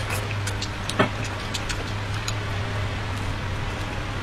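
Close-miked eating sounds of a tomato slice being put in the mouth and chewed: small wet clicks and smacks, with one sharper smack about a second in, over a steady low hum.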